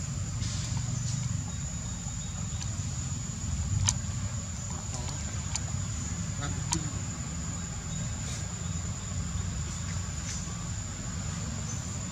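Outdoor ambience: a steady low rumble under a continuous high-pitched whine, with a few sharp clicks scattered through it.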